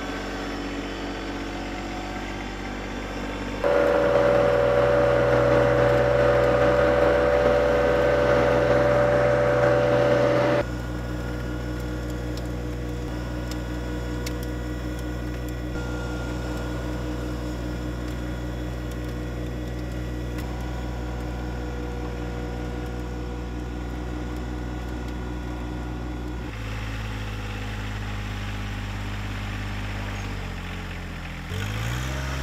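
John Deere 1025R compact tractor's three-cylinder diesel engine running steadily while pulling a corn planter row unit through tilled soil. The sound changes abruptly at the shot cuts: it is louder, with a strong steady hum, from about 4 to 10 seconds in, and drops back after.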